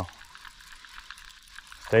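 Water splashing and hissing as a hooked fish thrashes at the surface beside the boat while being fought on rod and reel.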